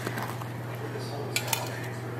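A metal spoon scrapes and knocks as thick cake batter is spooned from a mixing bowl into a metal bundt pan, with a couple of sharp clicks about one and a half seconds in. A steady low hum runs underneath.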